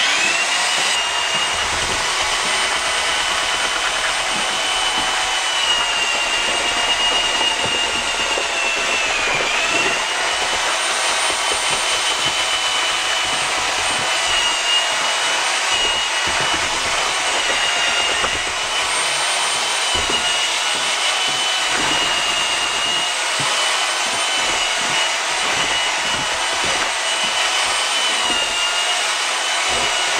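Half-inch DeWalt drill turning a bucket mortar-mixer auger through sand-and-cement deck mud in a five-gallon bucket. The motor whine starts suddenly and holds steady, dipping briefly in pitch about nine seconds in.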